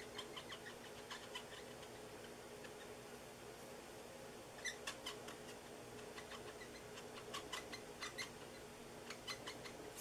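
Stampin' Blends alcohol marker tip dabbing and stroking on a clear plastic window sheet as it colours: faint quick taps in irregular clusters, over a low steady hum.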